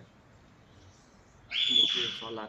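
A loud, high whistling tone about one and a half seconds in that slides up in pitch and then holds steady for about half a second.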